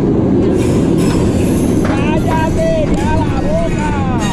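Mako's B&M hyper coaster train rolling along its steel track onto the lift hill, a loud, steady low rumble. From about halfway in, rising-and-falling voices are heard over it.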